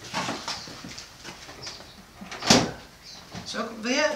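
Handling sounds at a hand-cranked stainless-steel honey extractor and its frames: soft clatter, with one sharp knock about two and a half seconds in.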